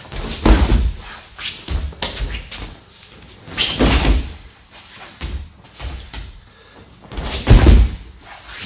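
Heavy thuds and scuffs of a man shooting in and dropping onto his knee on a judo mat, then getting back up, repeated several times. The loudest thuds come about half a second in, around four seconds and near the end.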